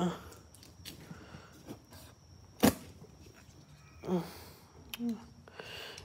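Folding knife slitting the packing tape on a cardboard box: faint scraping and handling noise, with one sharp snap about two and a half seconds in.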